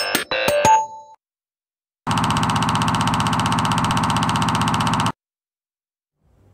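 A synthesizer advertising jingle with sharp clicks ends about a second in. After a short gap, a steady electronic buzzing tone, pulsing rapidly, sounds for about three seconds and cuts off suddenly.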